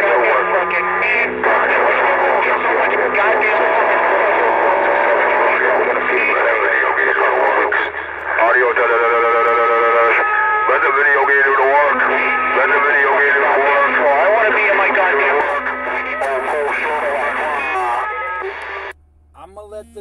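CB radio speaker carrying a strong incoming transmission: distorted, narrow-band voice mixed with music or tones, with a warbling stretch around the middle. It cuts off abruptly shortly before the end.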